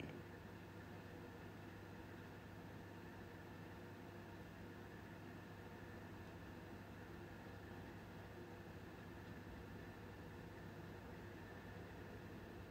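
Near silence: faint steady room tone with a low hum.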